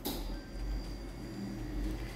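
Low steady hum and rumble with a faint hiss and a thin high whine; no distinct event stands out.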